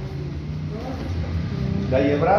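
Faint talking over a steady low background rumble.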